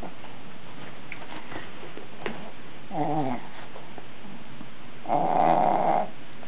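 A small puppy playing on a bed makes two short vocal sounds. The first, about three seconds in, is brief and falls in pitch; the second, near the end, is longer and louder.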